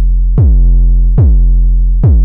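Distorted 808-style sine bass from the Serum software synth, played as repeated notes. Each note opens with a quick downward pitch drop for punch and settles into a deep, fat held tone, thickened by tube distortion as the drive is turned up. New notes start about half a second in and again just past one second.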